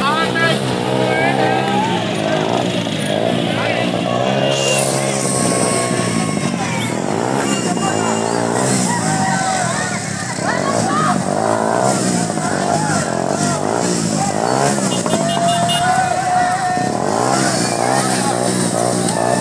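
Motorcycle engines running as motorbikes ride slowly through a dense crowd, with many voices shouting over them.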